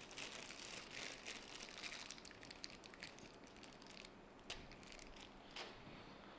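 Faint crinkling and rustling with many light clicks as a replacement capacitor is fetched from a parts stock and handled. There are two sharper clicks in the second half.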